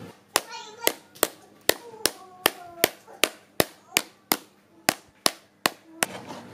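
A steady series of sharp taps, about two to three a second, evenly spaced.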